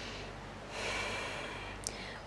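A woman breathing audibly during a held yoga lunge: one soft breath fading out at the start, then another long breath starting about half a second in, with a small mouth click near the end.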